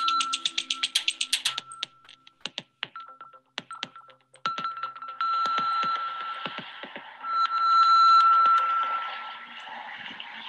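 Background music: a rapid pulsing beat of about eight clicks a second that breaks off after a second and a half, a few scattered clicks, then a long held high tone over a soft wash that swells and fades away.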